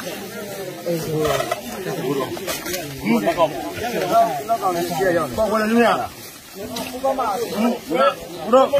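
Several men talking at once, overlapping voices in a group conversation, with a brief lull about six seconds in.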